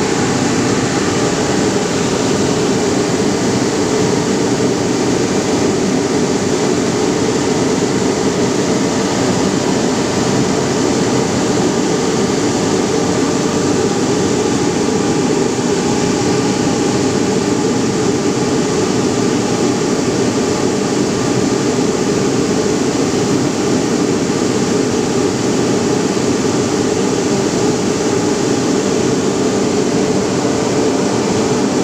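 Ring spinning frame running: spindles and drafting rollers making a steady, loud whir with no change in pitch or level.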